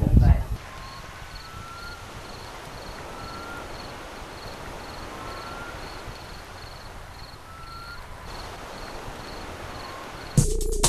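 Outdoor desert ambience: a steady hiss, with a faint high chirp repeating about twice a second and a short rising call about every two seconds. A brief loud low rumble sits at the very start.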